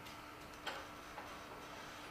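Faint room tone with a steady low hum, broken by a single soft click about two-thirds of a second in and a fainter tick a little later.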